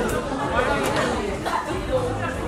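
Indistinct chatter of several people talking at once, with no music.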